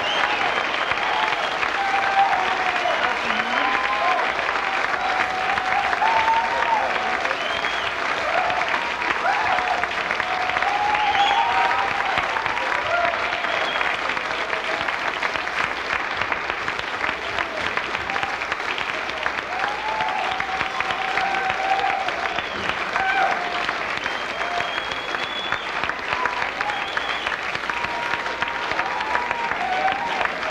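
Concert audience applauding steadily after a set, with voices calling out over the clapping. The applause eases slightly about halfway through.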